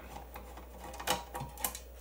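A few light clicks and taps, four or so spread over two seconds, as a screwdriver is picked up and handled against a steel power-supply chassis, over a faint steady low hum.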